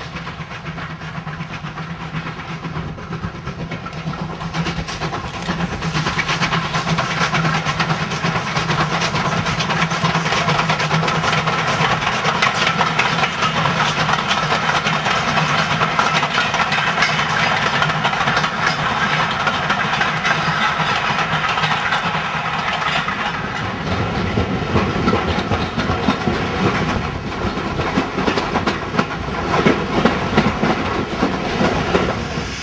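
Steam-hauled passenger train running on the rails: a steady rumble with wheel clatter, growing louder about five seconds in.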